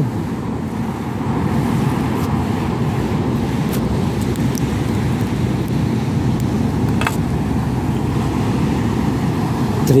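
Steady rushing, rumbling wind noise on the microphone in a strong onshore wind. A single faint click sounds about seven seconds in.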